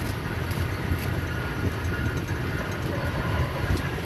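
Open safari game-drive vehicle driving slowly along a sandy bush track: a steady low engine and tyre rumble, with a few faint knocks from the body.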